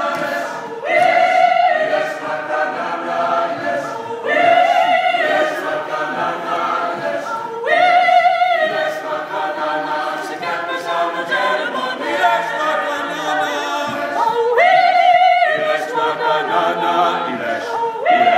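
A mixed men's and women's a cappella choir singing in close harmony, with no instruments. A loud, bright sung phrase starts afresh every three to four seconds.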